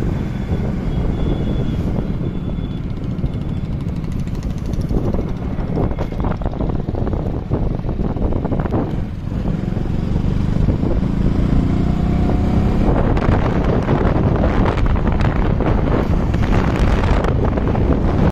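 Wind rushing over the microphone while riding in the open along a road, with vehicle engine and road noise underneath. It gets louder in the last few seconds.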